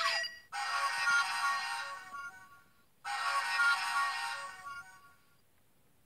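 Bandai DX Climax Phone transformation toy playing its electronic DenLiner summoning sound effect through its small speaker twice in a row: two matching jingles of about two seconds each.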